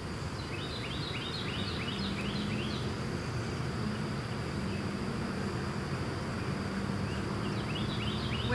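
Outdoor ambience of insects droning steadily in a thin high tone over a steady low rumble. A rapid run of short rising chirps, about three a second, comes about half a second in and lasts a couple of seconds, and starts again near the end.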